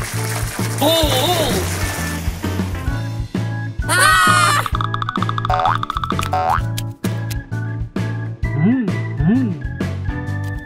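Upbeat cartoon background music with a steady beat, with a garden hose spraying during the first couple of seconds. About four seconds in comes a loud springy boing sound effect, followed by rising whistle-like glides.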